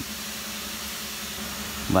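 Steady background hiss with a faint low hum, no distinct events; a man's voice starts again at the very end.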